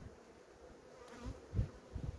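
Honeybees humming steadily over an open, crowded hive. A couple of soft low knocks come about one and a half seconds in, as a wooden frame is pulled up out of the box.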